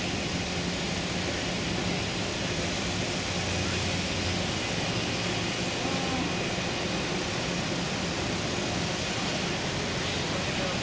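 Steady city background din: an even hiss with a low hum underneath, unchanging throughout, typical of distant traffic.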